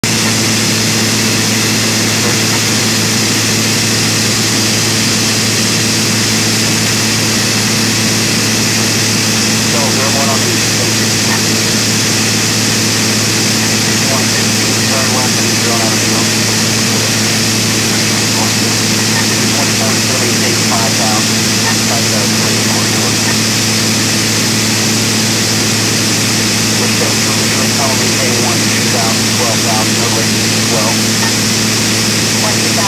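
Steady drone of a private aircraft's engine and propeller heard inside the cockpit, loud and unchanging, with a constant hiss of cabin and air noise.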